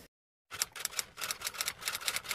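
After a half-second of dead silence, a rapid run of sharp clicks, about eight a second, like typing.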